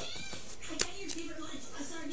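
Faint handling of trading cards on a cloth play mat, with one light tap of a card a little under a second in. Behind it is a faint, wavering, voice-like cry in the background.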